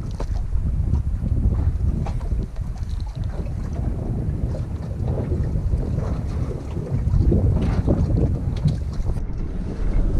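Wind buffeting an action camera's microphone on a small boat at sea: a steady low rumble with a few faint handling knocks.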